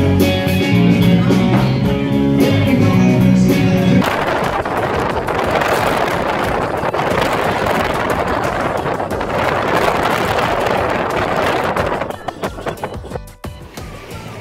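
Live band music with guitar for about four seconds, cut off abruptly by a steady rushing noise that lasts about eight seconds and then drops away.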